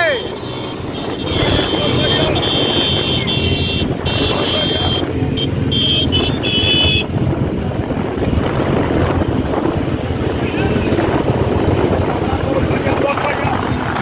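Wind on the microphone and a running vehicle engine while moving at speed alongside a buffalo cart race, with shouting voices mixed in. A high thin tone sounds over the first half and cuts off suddenly about seven seconds in.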